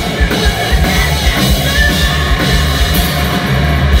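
Live heavy rock band playing at full volume, with a fast, driving kick-drum pattern under dense guitars.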